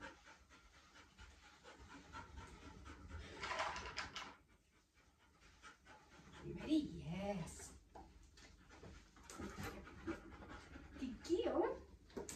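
A dog panting, with brief bits of a person's low voice in between.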